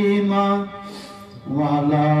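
A man's voice chanting in long, held notes, breaking off for a breath about halfway through and coming back in on a lower note.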